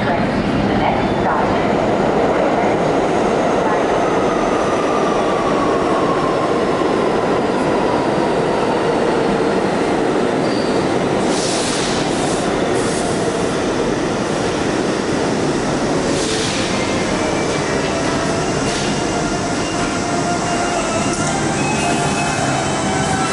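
New York City subway train noise in a station: a loud, steady rumble. A whine falls in pitch a few seconds in, and short hisses come about halfway through and again a few seconds later.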